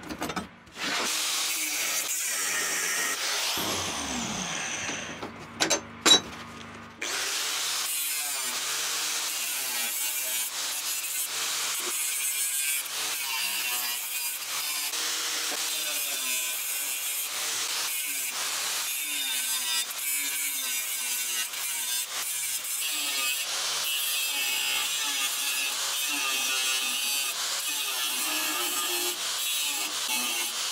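Angle grinder with a thin cut-off disc cutting through rusty steel plate: a continuous harsh grinding hiss, with the motor's pitch wavering as the disc is loaded. It settles into a steady cut about seven seconds in, after a couple of sharp knocks.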